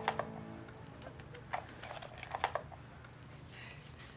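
Light, scattered clicks and taps of playing cards and red plastic bridge bidding boxes being handled on a tabletop, over faint background music.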